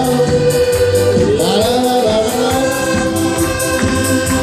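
Live amplified accordion ensemble: several accordions playing a tune together over a steady beat, with a man's voice singing into a microphone.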